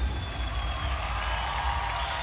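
Studio audience applauding and cheering as a dance number ends, a steady wash of clapping and shouts.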